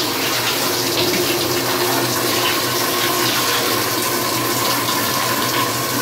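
Top-loading washing machine filling, a steady rush of water pouring into the drum with a faint steady hum beneath it.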